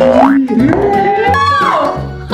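Upbeat background music with added cartoon sound effects: a quick rising pitch glide at the start and a falling glide about one and a half seconds in.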